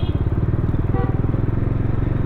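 Bajaj Dominar 400's single-cylinder engine running steadily at low speed in traffic, heard from the rider's seat. A high horn note cuts off right at the start, and a short beep sounds about a second in.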